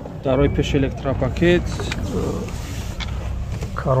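Mostly a man's voice talking, with a steady low hum underneath.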